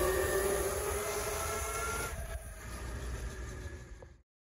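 Electric pit bike riding: a steady motor whine over low rumble, fading gradually and dying away at the end.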